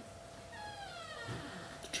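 A single high-pitched vocal call that falls in pitch, starting about half a second in and lasting under a second.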